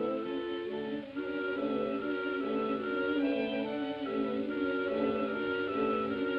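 Orchestral film score, strings carrying the melody over a steadily repeating low accompaniment note.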